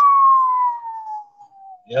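A single clear high note, like a long whistle, sliding slowly down in pitch for about two seconds; a man says "yeah" at the very end.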